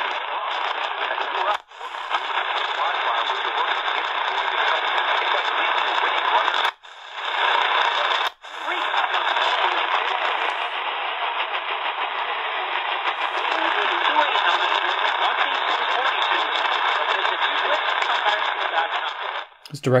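AM broadcast speech from distant medium-wave stations playing through the C.Crane CC Skywave portable radio's small speaker. The sound is thin and narrow, with no bass. It cuts out three times for a moment as the radio mutes while being tuned up the dial in steps from 580 to 610.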